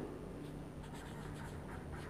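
A felt-tip marker pen writing words, a faint run of short strokes.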